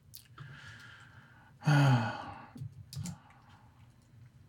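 A man's sigh of frustration about two seconds in: a breathy exhale with a falling voiced tone. A few light clicks follow.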